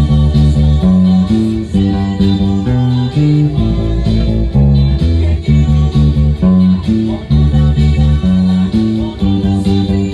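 Electric bass guitar playing a cumbia bass line in D major, a steady rhythmic pattern of plucked low notes moving through the song's chords, over a full cumbia track with percussion.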